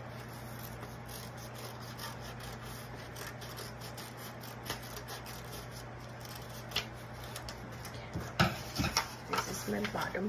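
Scissors cutting a curve through construction paper, faint against a steady low hum. Near the end come a few sharp taps and paper rustles as the cut piece is handled.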